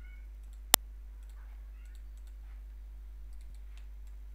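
A single sharp computer-mouse click about three-quarters of a second in, over a steady low electrical hum.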